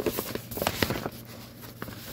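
Paper rustling: a large printed cross-stitch pattern sheet being handled and shifted, a series of short crisp crackles, most of them in the first second.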